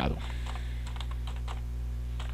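Computer keyboard being typed on: a quick run of light key clicks as a word is entered, over a steady low hum.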